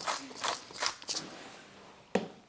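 Hand-twisted spice mill grinding seasoning over a bowl, about five short gritty crunches in the first second or so, then trailing off.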